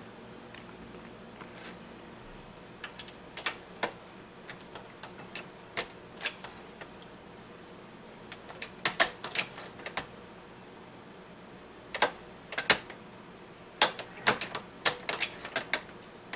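Metal clicks and clacks of a MEC 650 shotshell reloading press worked by hand as a shell goes through to the crimp. The clicks come irregularly, in clusters about halfway through and again, more densely, near the end.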